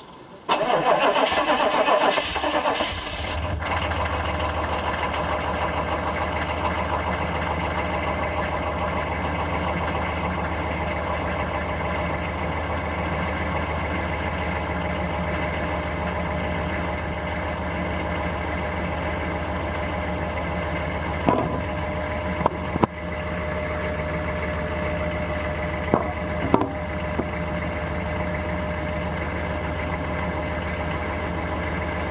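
A 1996 Chevrolet Suburban's engine starting about half a second in, running loud for a couple of seconds, then settling into a steady idle. A few sharp clicks are heard over the idle in the second half.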